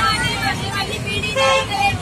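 Road traffic rumbling past, with faint voices from a marching crowd in the pause between loud chanted slogans.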